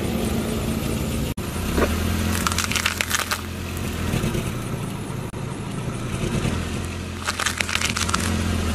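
A car's engine running slowly under clusters of crackling and snapping as its tyre rolls over and crushes vegetables laid on concrete: one cluster about two to three seconds in, and another near the end as the tyre crushes a row of green chillies. The sound cuts off sharply for an instant a little over a second in.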